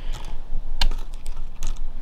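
Several irregular light clicks and taps of handling noise, the sharpest a little under a second in, over a steady low hum.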